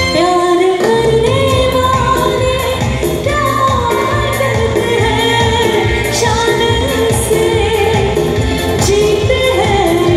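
A woman singing a Hindi film song live over a band's amplified accompaniment. The melody comes in about a second in, with long held notes over a steady low beat.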